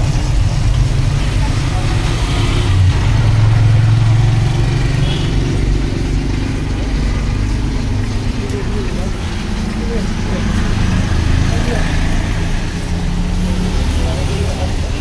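Busy background noise: a steady low hum and rumble with indistinct voices of people around.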